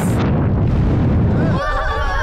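Cartoon rocket-launch sound effect: a sudden blast at ignition, then a dense, low rumble of rocket exhaust for about a second and a half, fading as a voice comes in near the end.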